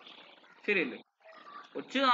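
A man's voice between sentences: breathy exhalations around a short, grunt-like syllable that falls in pitch, then speech resumes at the very end.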